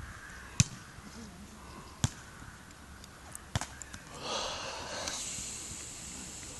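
A volleyball struck by hands three times, sharp slaps about a second and a half apart during a rally. After the third, a longer noisy rush follows and fades.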